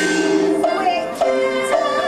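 Teochew opera accompaniment ensemble playing: several held melody lines, with a few sharp percussion strikes.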